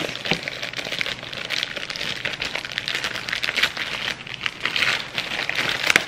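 Thin plastic crinkling and rustling as it is handled close to the microphone, with many small crackles running throughout.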